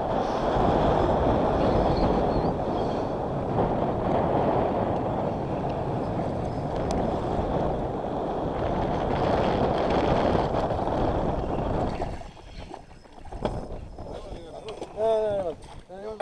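Steady rush of wind on the microphone for about twelve seconds, then it drops away, leaving small splashes and knocks and a brief voice near the end.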